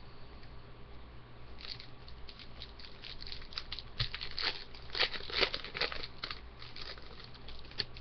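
Plastic wrapper of a hockey-card pack being torn open and crinkled by hand: an irregular run of sharp crackles, loudest about five seconds in.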